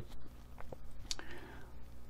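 A pause between words: faint breathing and a couple of small mouth clicks over a low steady room hum.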